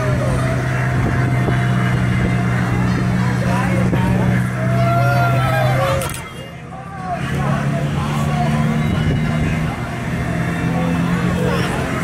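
Steady low hum of a spinning chair-swing ride's drive, with voices calling over it. The hum drops out briefly about six seconds in and comes back at a slightly higher pitch.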